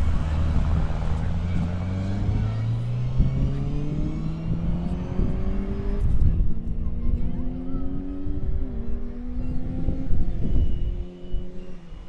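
Ford Escort Mk2 rally car accelerating hard out of a corner, its engine note climbing and dropping back through several upshifts, then fading as the car pulls away down the course.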